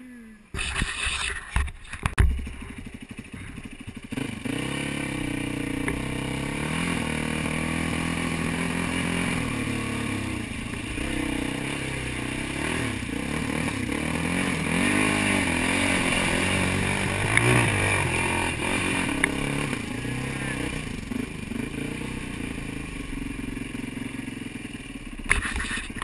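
Dirt bike engine: a few knocks in the first seconds, then it runs steadily with revs rising and falling as the bike is ridden through a shallow river ford, water splashing around it.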